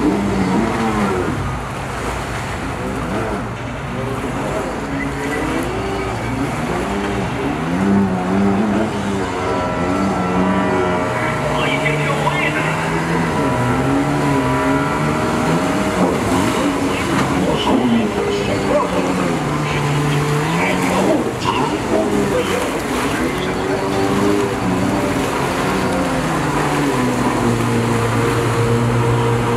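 Stand-up jet ski engine revving up and down over and over as the rider throws it through tight freestyle turns.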